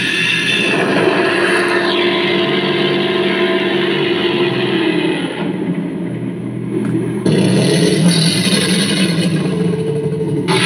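Zebronics Zeb-Action portable Bluetooth speaker playing a loud, dense music track from a phone. The sound thins out, losing its top end, about five seconds in, and comes back suddenly at full range about seven seconds in.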